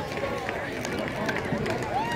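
Crowd babble of spectators: many overlapping, indistinct voices talking at once at a steady level.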